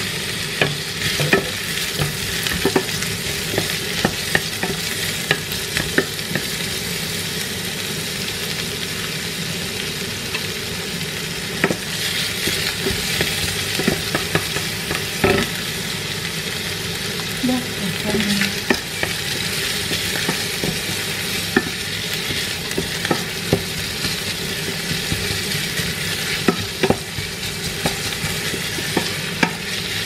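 Chopped garlic and red onion sizzling in hot oil in a stainless steel pot. A wooden spatula stirs them, knocking against the pot at irregular intervals.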